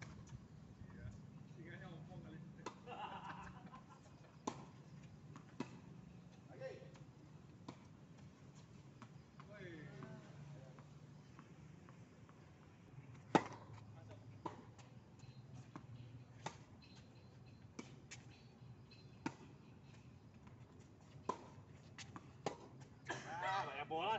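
Tennis balls struck by rackets and bouncing on an outdoor hard court: sharp, separate pops every second or two, the loudest about 13 seconds in, over faint voices and a low steady hum.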